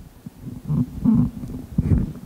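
Microphone handling noise: a few muffled, low rumbles and thumps.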